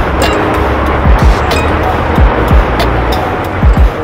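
Background music: deep kick-drum thumps, mostly in pairs, over a steady rushing hiss that cuts off at the end.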